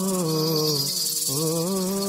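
Male singer holding long, drawn-out notes on the refrain 'ma', his pitch sliding down and breaking off about a second in, then rising again into a held note, over a steady high rattling hiss.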